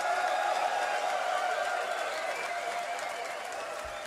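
Concert audience cheering and applauding, slowly dying down.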